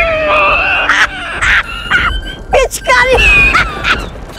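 A high-pitched voice crying out without words, in short wavering cries that rise and fall in pitch, like comic wailing and whimpering.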